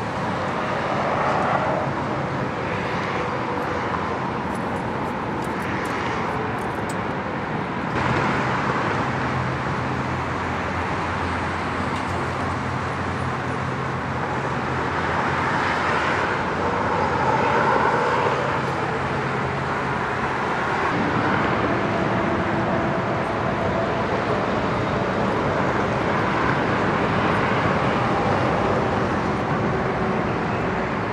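Steady freeway traffic noise, with vehicles swelling past every few seconds over a low, even hum.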